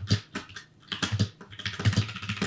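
Typing on a computer keyboard: a quick, uneven run of sharp keystroke clicks, each with a low thud.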